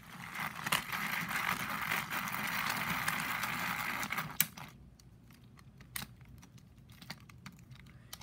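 Plastic TrackMaster Winged Thomas toy engine being handled on plastic track: a steady whir for about four seconds that ends with a sharp click, then quieter scattered plastic clicks and taps.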